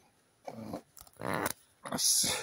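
A small dog making a few short sounds in brief bursts, starting about half a second in.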